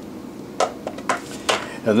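Light metallic clicks and taps, about four within a second, as a digital caliper and small steel gauge blocks are handled.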